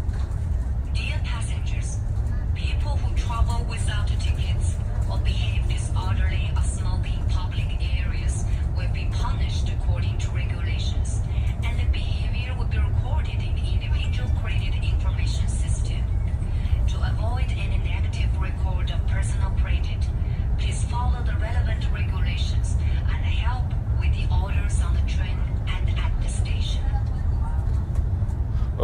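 Recorded public-address announcement in a train carriage: a voice over the steady low rumble of the moving train. The announcement warns passengers that misbehaviour will be recorded in the personal credit information system.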